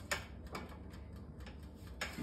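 Light clicks: one sharp click, a softer one about half a second later, then a few faint ticks.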